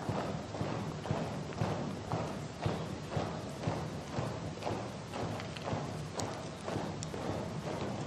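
A column of soldiers marching in step on a paved road, their boots striking together about twice a second in an even beat.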